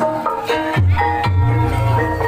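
Javanese gamelan music for an ebeg horse-trance dance: struck metallophone or bamboo notes in a steady pattern, with deep drum strokes about a second in followed by a low ringing tone.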